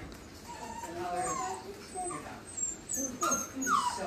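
Young puppies whimpering, with short, scattered high-pitched cries that bunch together in the second half.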